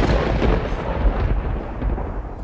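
A rumble of thunder: a deep rolling noise, loudest at the start and slowly dying away.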